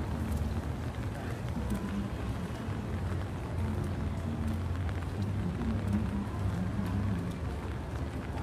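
Steady low hum of city street ambience with indistinct, wavering voices in the background.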